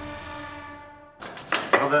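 Programme theme music ending on a held chord that fades out over about a second. It is followed by a few sharp clicks and knocks, the loudest sounds here, as a man starts to speak.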